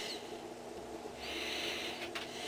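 A faint breath let out through the nose, starting just over a second in, over a faint steady hum.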